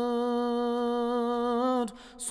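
One unaccompanied voice holding a single long, steady note in a Turkish ilahi (Islamic hymn). The note cuts off just before the end.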